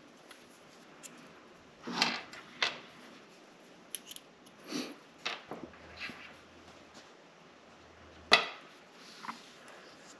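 Small hand tools and plastic radio parts being put down and handled on a wooden workbench: a scattering of separate clicks and knocks, the sharpest about eight seconds in.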